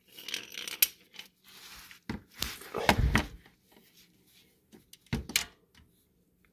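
Handling noises of a wrench being worked up into place on an ATV's oil drain bolt: a few metal knocks and scrapes against the underside with rustling. The loudest bump and scrape comes about three seconds in, and a sharp click about five seconds in.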